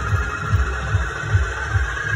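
Arcade background music: a steady bass beat of about two and a half thumps a second, under a held electronic tone.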